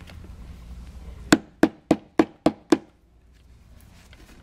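A small mallet tapping a seat-cover retainer pin home into a hole in a steel seat frame: six quick, sharp taps, about three a second, starting about a second in.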